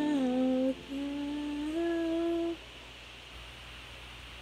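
A woman humming a slow melody in two phrases, holding and sliding between notes. She stops about two and a half seconds in, leaving a quiet room.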